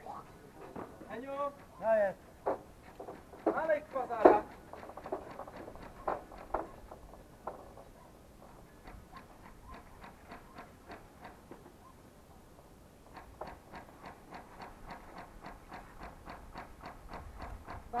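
Distant voices calling out loudly in the first few seconds, then a faint, even ticking at about three clicks a second through the second half.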